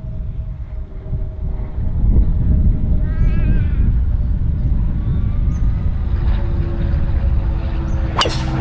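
Wind buffeting the microphone in a steady low rumble, with a faint steady hum underneath.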